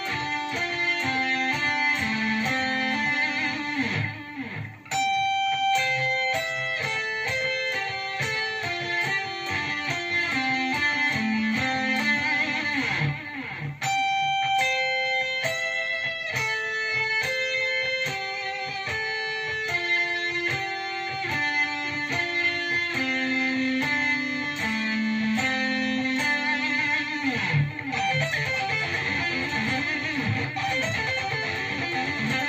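Electric guitar playing a quick melodic line of picked notes high on the neck, with short breaks about four and a half and thirteen and a half seconds in.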